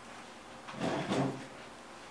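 A brief scraping rub about a second in, lasting under a second, as a person steps up against a wooden table.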